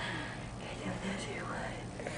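Quiet, faint voice sounds, much softer than the surrounding talk, with no loud event.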